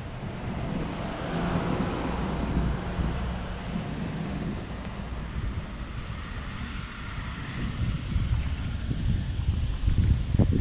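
Outdoor street ambience: a steady low rumble with wind buffeting the microphone, swelling slightly about two seconds in and again near the end.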